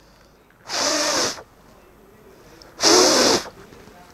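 Two strong puffs of breath, each lasting well under a second and about two seconds apart, blown between two hanging strips of paper held up at the mouth: a Bernoulli's-principle demonstration.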